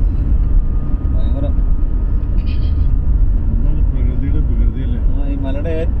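Steady low rumble of a vehicle driving along a rough, unpaved mountain road, heard from inside the vehicle, with voices talking over it.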